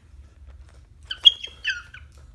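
A pet parrot giving two short, high-pitched chirps about a second in, close to the microphone. The second chirp drops in pitch at its end.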